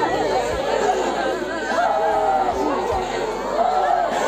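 A group of mourners talking over one another at once, several voices overlapping close by.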